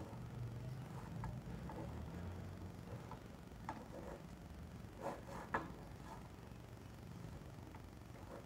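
Faint sounds of a hand mixing chopped cauliflower into a thick flour batter in a steel bowl: soft squishes and a few light clicks, the sharpest about five and a half seconds in, over a low steady hum.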